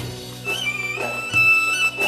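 Instrumental interlude on a Korg Pa700 arranger keyboard: a high, wavering solo melody line over sustained chords and bass.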